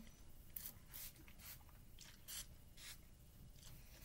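Spray bottle of leave-in hair detangler spritzed onto hair: a series of short, faint hisses, about one every half second.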